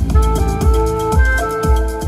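Saxophone played live over a DJ's electronic dance track, with a steady kick drum about twice a second under held melody notes.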